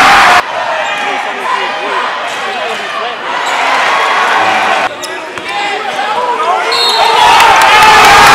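Live game sound of a basketball game in a gym: a basketball bouncing on the hardwood amid the chatter and shouts of the crowd, cut into short segments, with the crowd noise growing louder from about seven seconds in.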